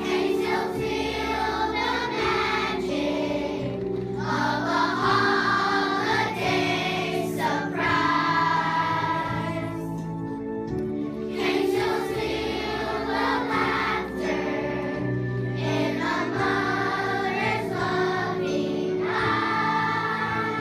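A group of young children singing a song together over instrumental accompaniment, in sung phrases of a few seconds with brief instrumental gaps between them.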